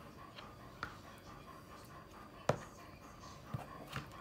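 A dog panting heavily, with a few sharp clicks; the loudest click comes about two and a half seconds in.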